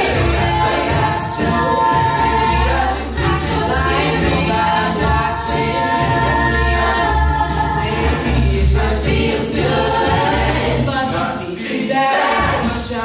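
An a cappella group singing: a female lead voice over sustained backing harmonies and a low bass line, with vocal percussion keeping a steady beat.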